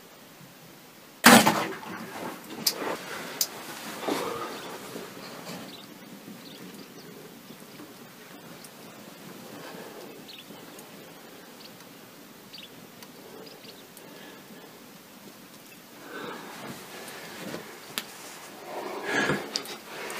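A bow shot at an impala: one sudden loud crack of the string and arrow about a second in, followed by a few seconds of scattered clicks and rustling. More rustling in the blind near the end.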